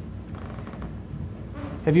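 A steady low electrical buzz through a pause in speech; a man's voice starts speaking near the end.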